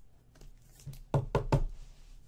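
Three quick knocks of rigid plastic card holders tapped against a desk, about a second in, as a stack is squared up.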